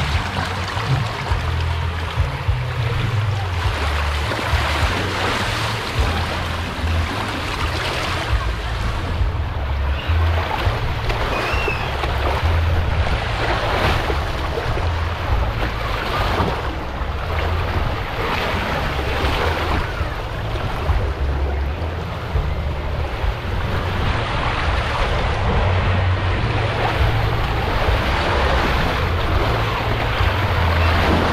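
Water rushing down a fiberglass flume slide under a rider on a body mat: a steady wash of noise with a heavy low rumble and wind buffeting the microphone.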